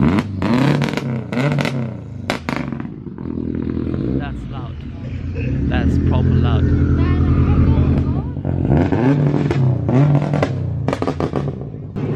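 A car engine running, its pitch rising and falling a few times as it is revved, loudest about halfway through.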